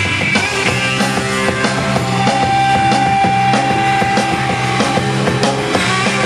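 Live rock band playing an instrumental passage: electric guitars over a drum kit keeping a steady beat, with one long note held for about three seconds in the middle.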